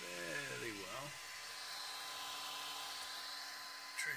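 3D printer's cooling fans running, a steady hiss with a faint steady hum. A short vocal sound falls in pitch in the first second.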